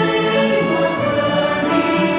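Mixed church choir singing a hymn in parts on held notes, accompanied by a string ensemble of violins and cello.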